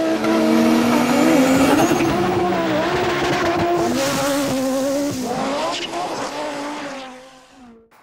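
Intro sound effect of a racing car engine running, its pitch shifting up and down and wavering, fading out near the end.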